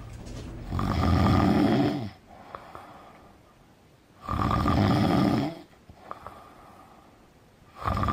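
A man breathing heavily: two long, rasping, snore-like breaths, each over a second long and about three and a half seconds apart, with a third starting at the very end.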